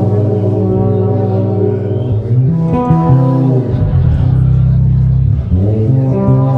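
Live band playing sustained chords with electric guitar, bass guitar, keyboards and drums over a heavy low end, the harmony shifting several times.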